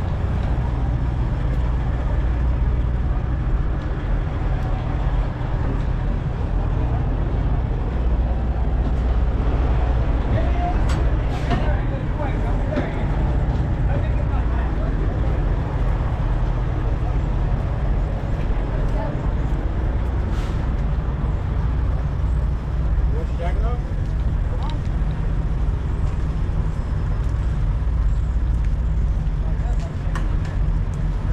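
Steady low rumble of idling diesel semi-truck engines, with people talking faintly in the background and a few sharp clicks.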